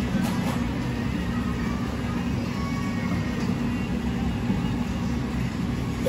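Steady low background hum, with a few faint taps of a knife on a plastic cutting board near the start as boiled prawns are sliced in half.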